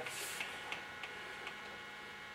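Four faint, light clicks spread over about a second and a half, over a low steady background: a valve-guide hone and hand drill being handled and set at a cylinder head.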